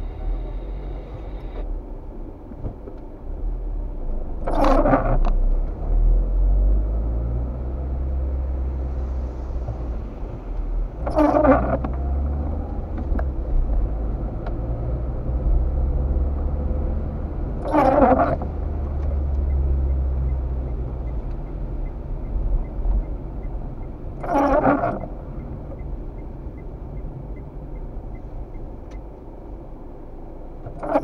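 Car cabin in rain: steady low engine and road rumble, with a windshield wiper sweep about every six and a half seconds, four times in all, on an intermittent setting.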